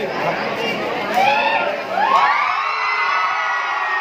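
Crowd of school students cheering and shouting, with one long shout rising and held from about two seconds in.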